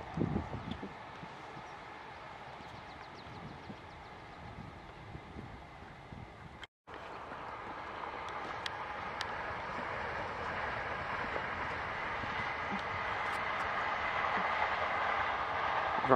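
Distant Southeastern electric multiple-unit trains running along the line, a steady rolling rail noise that gradually grows louder from about halfway through.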